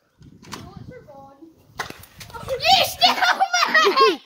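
Children shouting excitedly, loud and high-pitched from about halfway in, after a sharp click or two.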